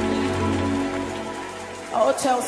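The held closing chord of a worship song fading out over an even hiss, growing quieter toward the end.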